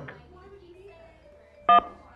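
One short, loud two-tone telephone beep near the end, like a phone keypad tone, as an incoming call is connected. Before it there is only a faint low murmur.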